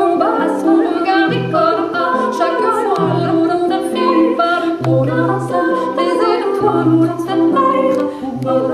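A woman singing without words over loops of her own voice layered with a sample pedal, making a choir-like a cappella texture. A low vocal line repeats about every second and a half beneath higher sustained and moving parts.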